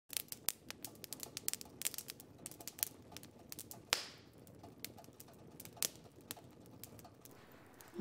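Wood fire crackling in a fireplace insert: quiet, irregular sharp pops and snaps, with one louder click and a short ring about four seconds in.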